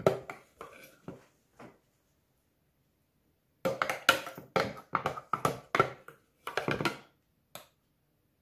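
Kitchen handling clatter: irregular hard knocks, taps and scrapes of utensils and containers. It comes in a short flurry at the start and a longer run of about a dozen knocks in the middle, with no blender motor running.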